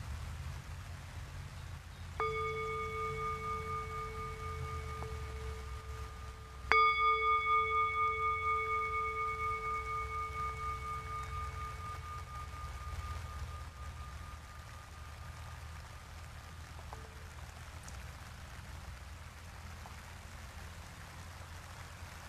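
Tibetan singing bowl struck twice, a few seconds apart, each strike ringing on as a sustained, shimmering multi-tone hum. The second strike is louder and fades slowly over about ten seconds.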